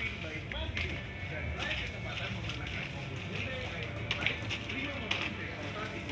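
Shop background: faint voices and a little music, with a few light clicks and knocks scattered through it.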